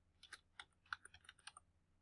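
Faint computer keyboard typing: a quick run of about ten short keystrokes over a second and a half as a short word is typed.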